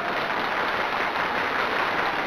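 Applause sound effect: a steady burst of clapping that fades in and fades out, marking the correct answer.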